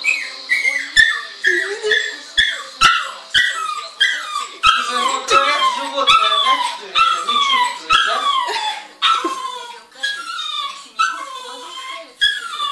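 Small shaggy dog whining in a long run of short, high-pitched cries, each falling in pitch, roughly one a second or faster: the dog protesting at its owner leaving.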